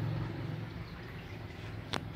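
Low steady hum of an engine running in the background, fading slightly, with one sharp click near the end.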